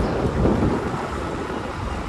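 Wind buffeting the microphone of a camera carried on a moving two-wheeler: a steady, loud rumbling noise with no voice in it.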